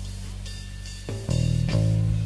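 Live rock band playing an instrumental passage between sung lines: guitars ringing over bass, with a new, louder chord struck a little over a second in.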